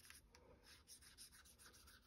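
Faint, repeated strokes of a clear Wink of Stella glitter brush pen's tip over the cardstock, laying shimmer onto the greeting.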